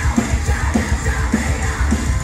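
Metalcore band playing live at full volume: distorted guitars, heavy bass and drums, with harsh screamed vocals over them.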